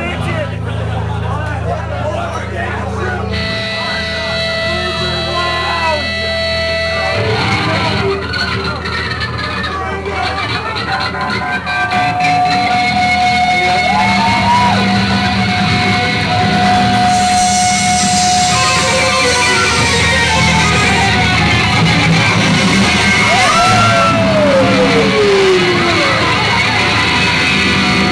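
A punk/hardcore band playing live on electric guitars, bass and drums, with long held guitar notes. It gets louder about halfway through.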